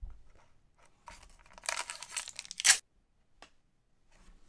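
A foil Pokémon TCG booster pack wrapper being torn open with crinkling, ending in one sharp rip about two and a half seconds in.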